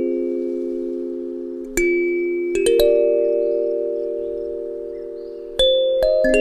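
Background music: a slow kalimba cover, plucked notes ringing and slowly fading, with fresh notes struck about two seconds in, a cluster just after, and again near the end.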